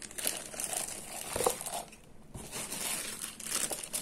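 Clear plastic packaging bags crinkling as wrapped items are handled, irregular crackling with a few sharp clicks and a short lull about halfway through.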